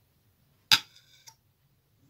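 A hard container knocked against a hard surface: one sharp click with a brief ringing, then a fainter click about half a second later.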